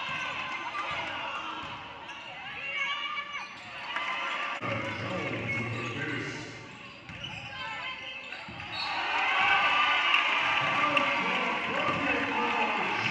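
Basketball game sounds in a gym: a ball bouncing on the hardwood court with players and spectators calling out in the background. The voices grow louder about three-quarters of the way through.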